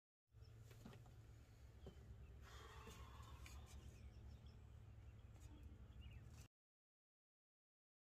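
Faint outdoor ambience: a steady low rumble with a few light clicks and faint bird chirps, cutting off abruptly.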